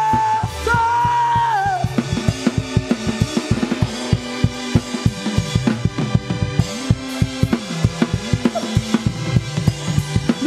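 Church worship music with a drum kit and bass: a held note slides down and ends about two seconds in, then a fast, steady drum beat with a walking bass line carries on.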